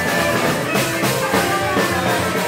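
Live rockabilly band playing an instrumental stretch: electric guitar over a steady drum beat, with no singing.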